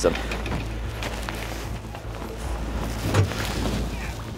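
Boat motor humming low and steady under wind and water noise, with faint voices briefly partway through.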